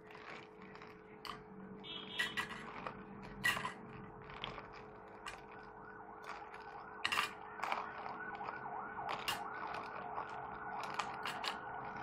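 Ice cubes clinking and knocking in scattered clicks as they are tipped from a steel bowl into a glass jug of blended cucumber juice. From about seven seconds in, a fast-wavering, siren-like tone runs underneath.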